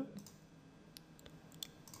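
A few faint computer mouse clicks, about a second in and again near the end, over quiet room tone.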